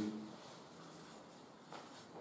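Marker pen writing on flip-chart paper: a quick series of short, high scratchy strokes.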